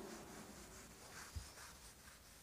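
Faint rubbing strokes of a handheld duster wiping marker ink off a whiteboard, with a soft bump about halfway through.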